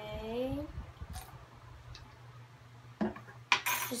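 Spoon clinking and scraping against a plastic tub while slime mixture is stirred: a few light taps, then louder scrapes near the end.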